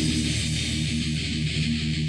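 Death/thrash metal recording: a distorted electric guitar playing a riff with no drum hits.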